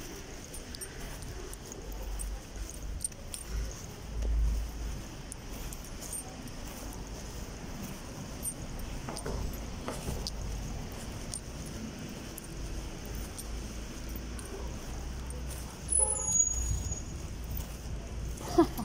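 Car running at low speed, heard from inside the cabin: a steady low engine and road rumble that swells a few times, with scattered small clicks and rattles and a brief louder sound near the end.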